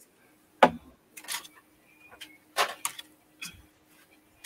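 A few short spritzes from a hand spray bottle of water, with a knock as a bottle is handled about half a second in.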